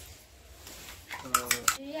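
Toy drumming monkey: three sharp plastic clacks in quick succession, over a voice.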